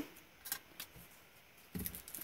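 A few faint clicks from handling a flat metal bottle cap as a round paper image is pressed down into it, two of them about half a second and just under a second in.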